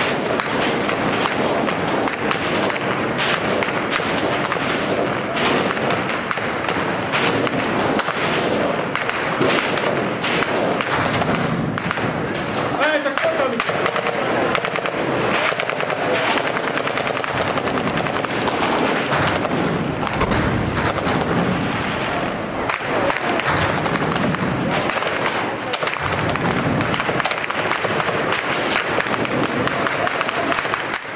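Sustained heavy gunfire from machine guns and rifles in urban combat, with shots following one another many times a second and no real pause.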